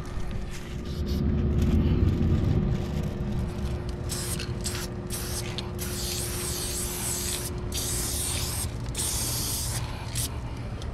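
Aerosol spray paint can hissing in a run of bursts from about four seconds in, with short breaks between strokes. A low rumble comes before it, loudest in the first few seconds.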